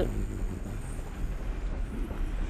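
Sound effect of a train ride: the steady low noise of a moving train.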